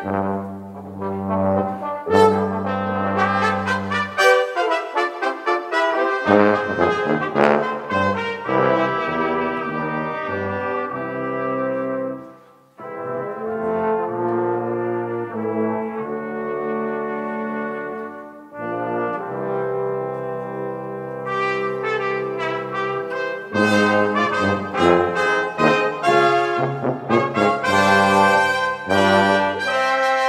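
Brass quintet of two trumpets, French horn, trombone and tuba playing a piece together, with long low notes near the start and a brief break about twelve seconds in.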